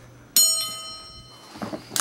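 A metal part clinks sharply and rings on, the ring fading away over about a second and a half, with a short click near the end.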